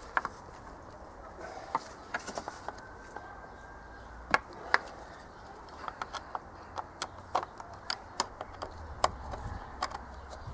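Irregular sharp clicks and knocks of plastic engine-bay parts being handled as a van's air intake hose and air filter housing are worked back into place, coming more often in the second half.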